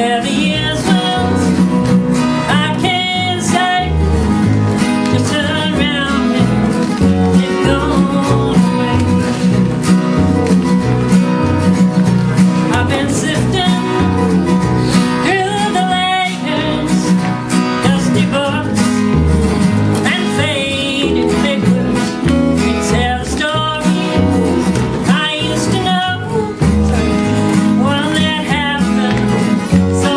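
Live acoustic folk song: a woman singing in phrases over two strummed acoustic guitars and an upright double bass.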